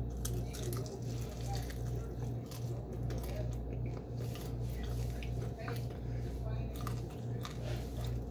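Close-up chewing and biting on fried chicken: wet mouth sounds with many small irregular clicks and crunches. A steady low hum pulses about two to three times a second underneath.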